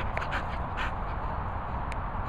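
A dog panting in a few short, quick breaths with its mouth open, over a steady low rumble.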